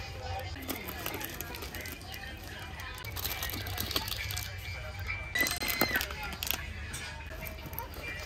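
Shop ambience: background music and voices over a steady low hum, with light clicks and rustles from plastic snack packets and bins being handled.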